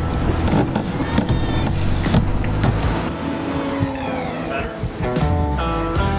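Background music with a steady bass line.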